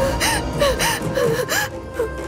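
A woman's rapid, distressed gasping sobs, about three a second, over a steady background music score; the gasps pause briefly near the end.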